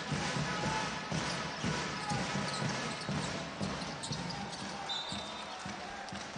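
A basketball being dribbled on a hardwood court, repeated low thuds, over the steady murmur of an arena crowd and players' voices.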